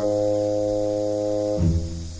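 Background score music: a sustained chord held for about a second and a half, then a lower note comes in.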